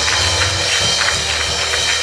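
Church band music: a steady low bass with percussion.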